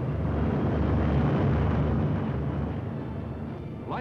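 Twin piston engines of a C-119 transport plane running at high power on its takeoff run, a loud rumble that swells about a second in and slowly eases off.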